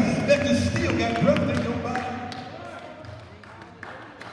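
A man's voice through a handheld microphone and the hall's PA, drawn out in a sung delivery with music under it, dying away two to three seconds in.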